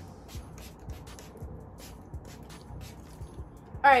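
A hand-pump spray bottle of hair primer spritzing several quick bursts, most of them in the first second or so, over background music.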